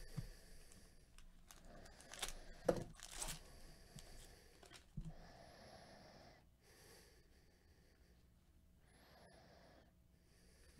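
Foil trading-card pack wrapper being torn open and crinkled about two to three seconds in, followed by a knock and the soft sliding of cards being handled.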